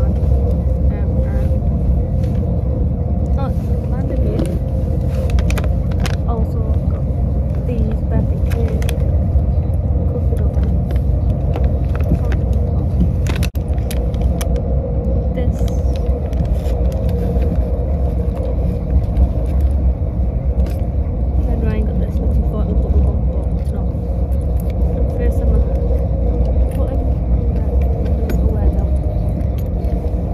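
Steady low rumble of a moving train heard from inside the carriage, with a constant hum over it and a few faint clicks.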